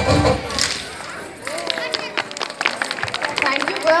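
Garba dance music cuts off just after the start; after a brief lull, scattered sharp handclaps of audience applause follow.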